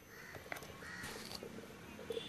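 Faint bird calls, two short arching calls, over low background noise.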